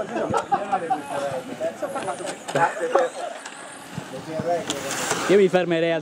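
People talking in Italian, with a short hissing rush about five seconds in.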